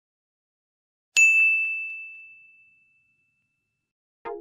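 A single bright ding sound effect about a second in: one clear high tone that rings out and fades away over about two seconds.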